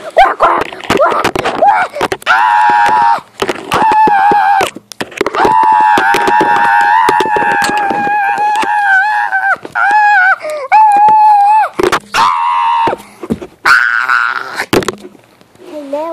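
A girl's loud, high-pitched wordless vocalising: long drawn-out squealing tones with a slightly wavering pitch, broken by shorter squeals, with sharp clicks and knocks scattered through.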